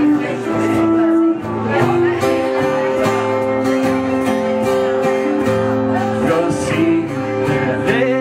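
Live acoustic band music in an instrumental passage of a folk-blues song: a strummed acoustic guitar with an electric guitar and a harmonica playing long held notes over the chords.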